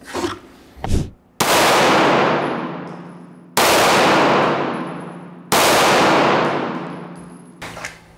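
Three pistol shots of light 100-grain solid-copper rounds fired through a car windshield. Each is a sharp crack followed by a long echoing tail that fades over about two seconds, the shots about two seconds apart.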